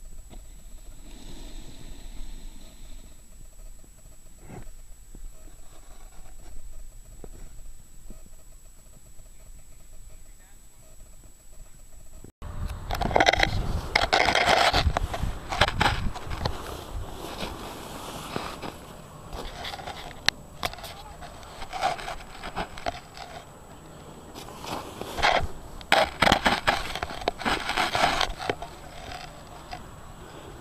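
Close-up handling noise on an action camera set in the snow: uneven loud bursts of rubbing and scraping of snow and clothing against the camera. A quieter stretch before it ends at an abrupt cut about twelve seconds in.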